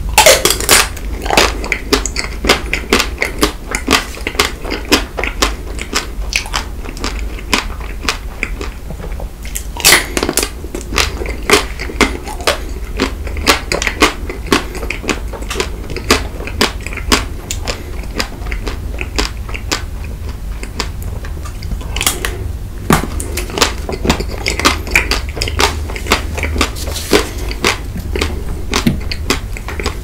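Close-miked biting and chewing of a white chocolate-coated Magnum ice cream bar: the thin chocolate shell cracks and crunches between the teeth, followed by soft, wet chewing. The loudest bites come at the start, about ten seconds in and about twenty-two seconds in, over a low steady hum.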